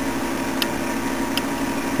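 Steady background hum and hiss, with two faint clicks about half a second and a second and a half in.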